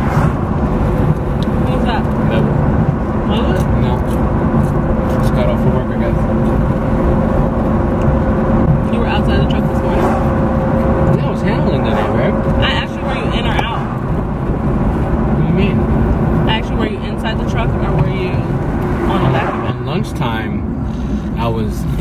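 A man talking over the steady rumble of road and engine noise inside a moving car's cabin, with a faint steady hum that stops a little past halfway.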